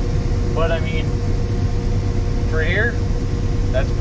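New Holland TR88 combine running, a steady low drone heard from inside its cab, with a constant hum over it.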